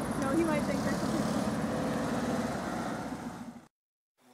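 A 1972 Volkswagen bus's air-cooled flat-four engine running as the van approaches, with people's voices calling out over it. The sound fades out to silence near the end.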